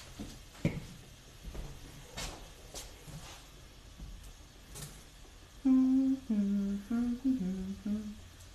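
A person humming a short tune in a small room, about six held notes stepping up and down, starting a little over two-thirds of the way in. Before it there are only faint taps and rustles.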